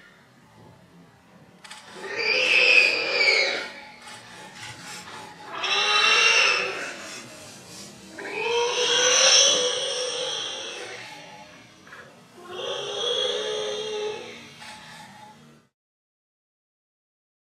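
Warthog squealing in distress while caught in a lioness's jaws: four long, loud screams a couple of seconds apart.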